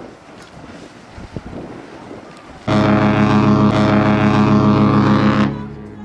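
The AIDAdiva cruise ship's horn sounds one long, deep, steady blast of about three seconds, the ship's signal on leaving the quay. It starts suddenly about two and a half seconds in, after wind noise, and dies away near the end.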